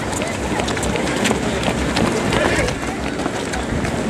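Footsteps of a large pack of half-marathon runners on an asphalt road: many running shoes striking the road in a dense, uneven patter, with indistinct voices of people nearby.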